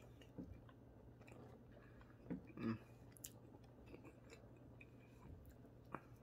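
A person quietly chewing a piece of cheese, with a few brief mouth and lip sounds. The loudest come about two and a half seconds in.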